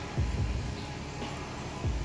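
Old Shakespeare fly reel being cranked by hand to reel in line, with soft handling bumps near the start and near the end.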